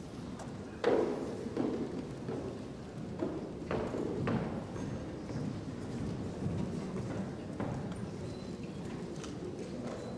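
High-heeled footsteps clacking on a stage floor: a few irregular steps, the loudest about a second in, over a low room murmur.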